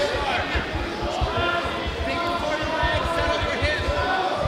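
Spectators and cornermen shouting and calling out around a cage fight, several voices overlapping, with frequent irregular low thuds underneath.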